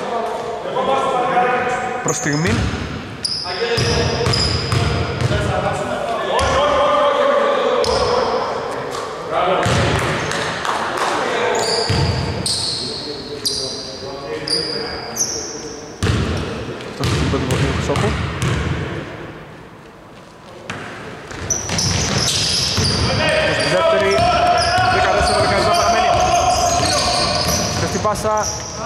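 A basketball bouncing on a wooden indoor court, with voices and short high squeaks echoing around a large sports hall.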